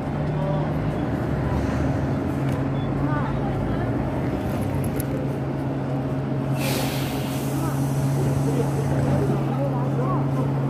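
Steady low hum of an idling vehicle engine, with a short hiss of air a little after the middle and faint voices in the background.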